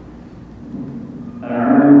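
A man's voice starts a long, held chanted note about one and a half seconds in, steady in pitch and quickly growing loud, in the manner of Qur'anic recitation.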